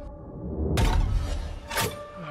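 A trailer sound-design hit: a low rumble swells into a sudden shattering crash, like breaking glass, about three-quarters of a second in, over a steady drone of the score. A second sharp hit comes just before the end.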